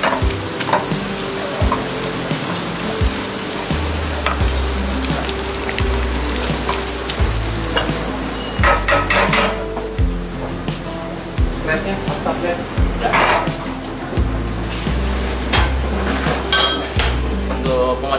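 Pesto pasta with chicken sizzling in a granite-coated wok as a wooden spatula stirs and scrapes it. The hiss thins out in the second half, where sharp clicks and knocks of the utensil on the pan come in, over background music with a steady bass line.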